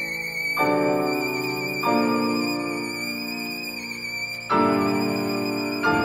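A c.1830 Raffaele and Antonio Gagliano violin holds a long high note with vibrato. Beneath it, piano chords change four times.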